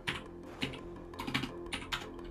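Typing on a computer keyboard: a run of irregular, separate keystroke clicks as a short terminal command is typed.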